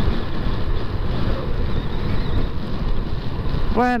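Steady wind rush on the microphone, with the running noise of a Yamaha cruiser motorcycle underneath, while riding at road speed.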